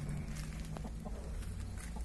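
Faint clucking of chickens over a low steady rumble.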